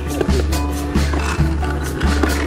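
Soundtrack music with a heavy, pulsing bass beat.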